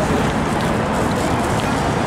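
Steady busy-street noise: passing traffic with a constant low rumble and faint voices.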